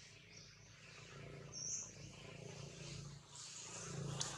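Faint outdoor background with a steady low hum, broken by brief high-pitched chirps, the clearest about a second and a half in.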